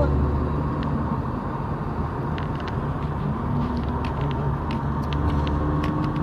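Steady low rumble of a moving vehicle, engine and road noise, heard from inside the cabin, with faint voices in the background.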